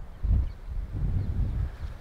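Wind buffeting the camera microphone: a low, gusty rumble that swells and eases.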